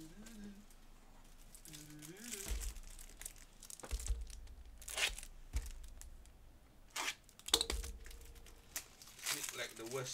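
Plastic trading-card pack wrapper being torn and crumpled in the hands, in irregular crinkling bursts, the loudest near the end.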